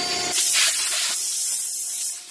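High-pressure water spray from a car-wash wand hitting a pickup truck: a loud, steady hiss that starts about a third of a second in.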